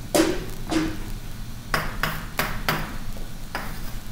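Writing on a board: about six sharp taps at irregular intervals.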